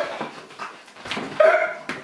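A young man laughing hard in high-pitched, squealing bursts, loudest about one and a half seconds in.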